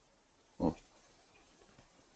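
A person's single short low vocal sound, a brief hum or grunt, about half a second in; near silence for the rest.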